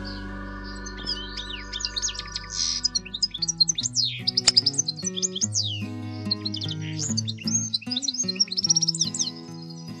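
Small birds chirping and twittering in rapid high calls over background music of held notes that change every second or two.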